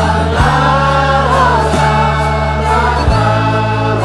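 Studio-recorded roots band song with a group choir singing together over it, held bass notes changing about every second and a half with drum hits on the changes.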